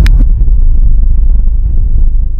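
Loud, steady low rumble of a car on the move, heard from inside the cabin: engine and road noise.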